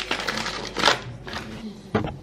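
Paper sugar bag rustling as sugar is poured out, in a few irregular noisy bursts, with a sharp click at the very end.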